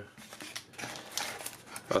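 Cardboard box being handled and opened: its lid and flaps scrape and tick lightly several times.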